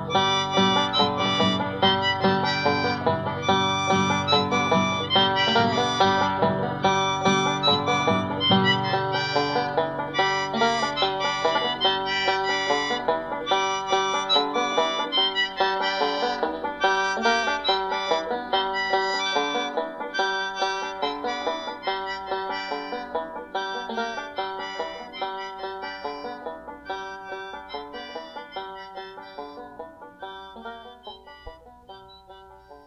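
Instrumental ending of a folk song: a banjo picks a fast, steady run of notes over accompaniment. The low bass drops out about a third of the way in, and the music slowly fades out over the last third.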